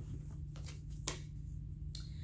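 Oracle cards being handled and drawn from a deck: a few soft, sharp card flicks and taps, the clearest about a second in, over a low steady hum.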